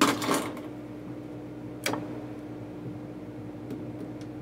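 Brief handling noises on a drafting table: a short clatter at the start, then a single sharp click just under two seconds in, over a steady low hum.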